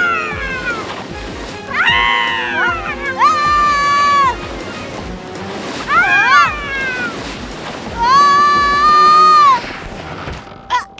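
Cartoon characters' high-pitched wordless cries and whoops, several of them long and held with rising and falling pitch at the ends, over background music with a steady beat.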